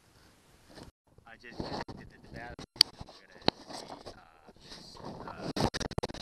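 About a second of near silence, then rustling and scraping handling noise with several sharp clicks, growing loudest near the end as the vinyl boat cover is pushed aside.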